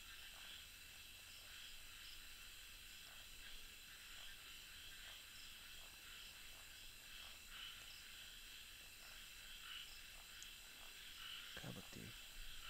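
Faint, steady night chorus of crickets trilling, with a soft, uneven pulsing in the high-pitched bands.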